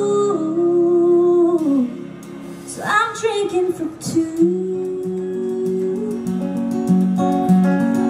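Live country song: a woman's voice holds long wordless notes that slide down in pitch, over acoustic guitar. From about halfway the guitar carries on in a steady strummed pattern.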